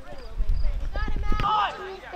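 Distant shouting voices from players on a soccer field, the loudest call about three-quarters of the way in, over a low wind rumble on the microphone, with a few short thuds near the middle.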